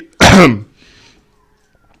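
A man's single loud cough, clearing his throat: one short, harsh burst falling in pitch, a fraction of a second in.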